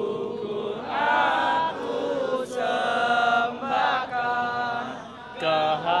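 A crowd of male student protesters singing together in unison, in long held notes broken into several phrases.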